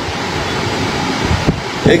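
Steady background noise in a pause between a man's sentences, with a faint knock about one and a half seconds in; his voice comes back at the very end.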